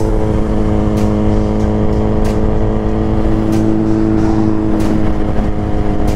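Suzuki GSX-R sport bike's inline-four engine running at a steady cruising speed, its pitch holding nearly even, with a low rush of wind noise underneath.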